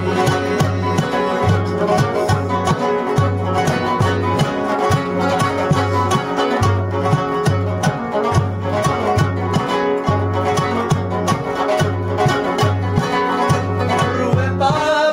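Instrumental interlude: a rubab's plucked strings playing a quick melody over a duff frame drum beating a steady rhythm.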